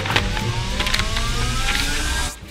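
Edited-in suspense sound effect: a single tone rising steadily in pitch over a rushing noise, building toward a reveal.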